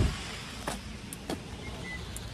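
A car door shuts with a single low thump, followed by two light clicks, over the steady hiss of rain.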